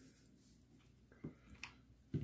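Near silence: room tone, with a few faint clicks and taps in the second half from handling a pre-rigged soft plastic swimbait to unhook it from its packaging.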